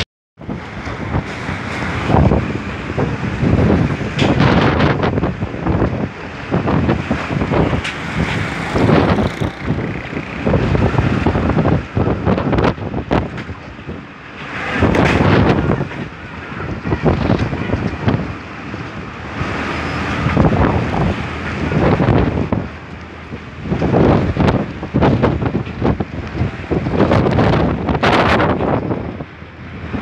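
Strong storm wind buffeting the microphone in gusts, rising and falling in loud surges every few seconds.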